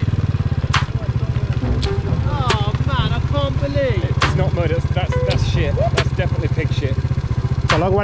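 Small single-cylinder four-stroke engine of a Honda C90 step-through motorcycle running steadily at low revs, with an even, fast pulse and occasional sharp clicks.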